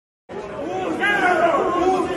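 Crowd of men shouting and talking over one another in a packed room, their voices overlapping into a din. The sound drops out entirely for about a quarter second at the very start, then the crowd noise comes back in.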